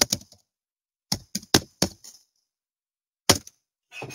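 Computer keyboard keystrokes: a quick run of four key clicks about a second in, then one more click near the end, with silence between.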